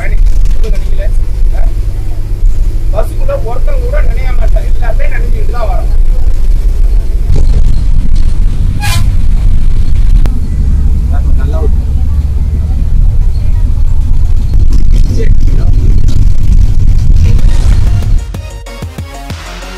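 Steady low rumble of a moving bus heard from inside the passenger cabin, with a man talking over it in the first several seconds and a brief high sound about nine seconds in.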